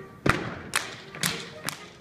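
Schuhplattler dancers' hand slaps and claps land together in four loud, sharp strikes, about two a second, over faint dance music.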